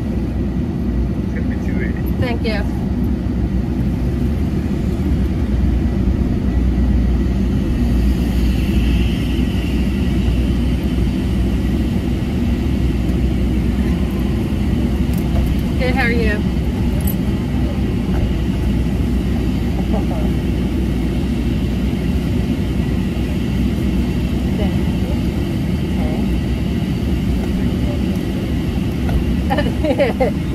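Steady low rumble of an idling vehicle, heard from inside the cab. A few brief high, falling vocal sounds break in about two seconds and sixteen seconds in.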